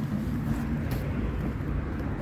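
Steady low rumble of a car, with a faint click about a second in.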